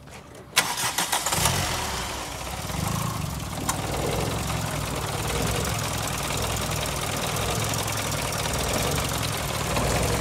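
Four-cylinder car engine cranked by the starter for under a second, catching and then idling steadily.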